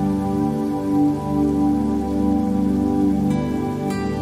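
Slow new-age meditation music of sustained, held chords over a steady rain sound.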